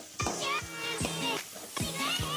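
Chopped onions and curry leaves sizzling in hot oil in a pan while a spatula stirs them. Background music with a steady beat and a melody plays over it.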